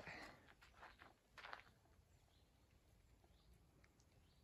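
Near silence, outdoor ambient hiss, with one brief faint rustle or step about a second and a half in.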